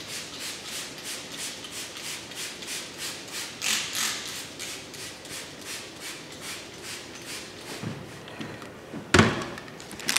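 Hand trigger spray bottle of mold-control solution being pumped over and over, about three short hissing squirts a second, soaking moldy wooden floorboards. A single loud thump comes near the end.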